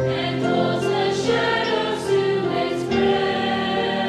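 Mixed high school choir singing in parts, boys' and girls' voices holding long chords that change every second or so, with a few crisp 's' sounds from the words.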